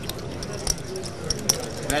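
Poker chips clicking together in a scatter of short, sharp, irregular clicks over a low murmur of room chatter.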